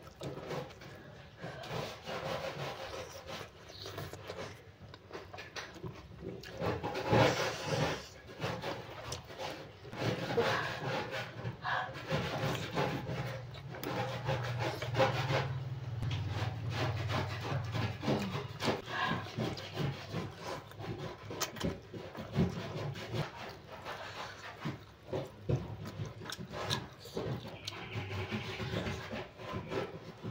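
Close-miked hand-eating sounds: fingers mixing and squeezing rice with sambal and tearing fried chicken, alternating with chewing and lip smacks, as an irregular run of wet clicks and rubs.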